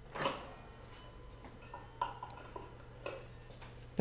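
A handful of light, separate clicks and knocks from the plastic bowl and lid of a food processor being handled, after the dough has come together.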